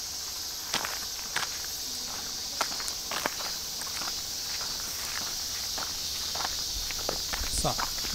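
Footsteps crunching on a dirt path, a few scattered steps, over a steady high-pitched insect chorus.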